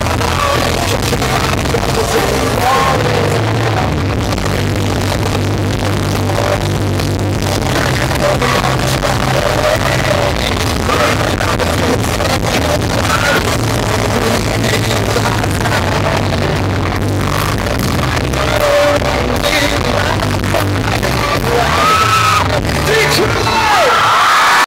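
A pop-punk band playing a song live through a club PA, loud and dense, with a male lead singer singing into a microphone over the band.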